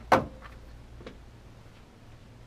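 One sharp knock just after the start, then a faint click about a second later, over quiet room tone: handling noise as studio headphones are taken off and hung on the microphone arm and the chair is left.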